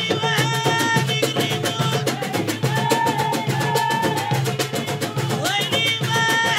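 Moroccan women's ensemble playing fast, dense hand drumming on frame drums and small goblet drums, with women's voices singing over it.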